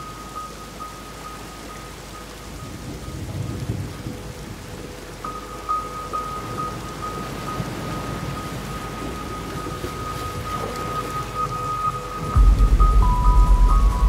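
Steady rain falling under a soft music track of repeated high, chime-like notes, with a low rumble about three seconds in. A loud, deep bass note comes in near the end as more notes join the melody.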